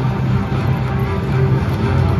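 Sky Rider slot machine's bonus-round music playing during free-game spins, a steady loop of repeated low notes.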